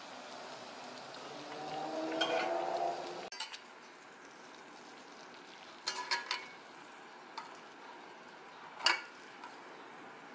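Yeast donut deep-frying in oil with a steady sizzle that swells for a couple of seconds near the start. A slotted metal turner then clinks against the pot a few times around the middle, and once more, sharper, near the end.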